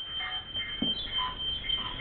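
A steady, high, thin electronic tone that fades out about one and a half seconds in, with short choppy snippets of sound around it.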